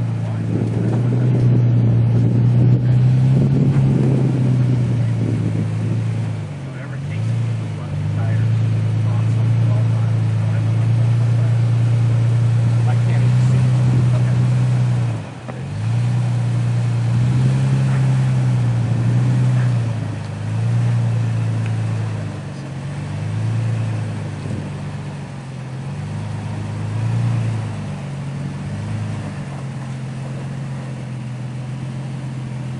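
Toyota Tacoma pickup's engine working under load as it crawls up a steep rock climb: a steady drone for about fifteen seconds, a sudden brief drop, then revs falling and rising again every second or two as the throttle is fed on and off.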